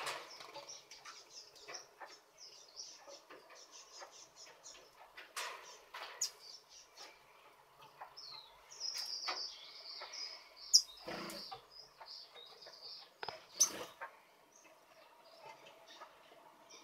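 Aviary finches, Gouldian finches among them, chirping with many short, high calls that come thickest a little past the middle. Sharp clicks and wing flutters come now and then; the loudest is a little past the middle.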